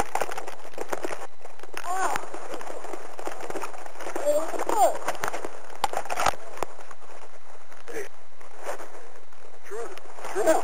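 Distant shouting voices, a few short yells with rising and falling pitch, over a steady background hiss, with one sharp knock about six seconds in.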